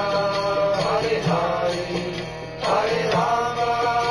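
Background music of devotional mantra chanting: long sung phrases, a new one starting about every second and a half, over a steady instrumental accompaniment.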